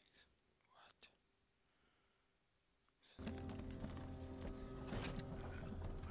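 Film soundtrack: nearly silent for about three seconds apart from a faint rustle, then a low, droning music score comes in suddenly, with whispering voices over it.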